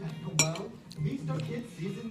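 A metal fork clinks once, sharply, against a ceramic bowl of noodles about half a second in, as it is set down.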